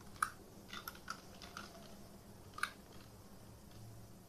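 Scattered keystrokes on a computer keyboard, about seven separate clicks. The loudest comes just after the start and another loud one comes past halfway.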